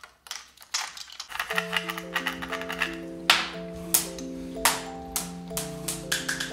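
Steel marbles clicking and rattling through the clear channels of a marble demagnetizer, in sharp separate clicks. From about a second and a half in, background music of held notes plays under them.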